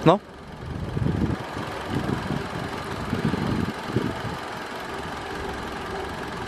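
Car engine idling steadily with the hood open, with low, muffled talk in the first few seconds.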